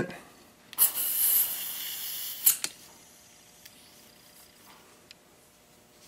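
Butane hissing from a refill can's nozzle into a Bic lighter through its newly fitted refill valve as the valve takes a fill. The hiss starts sharply about a second in and lasts under two seconds, ending with a click as the nozzle comes off; a second click follows, then a few faint ticks.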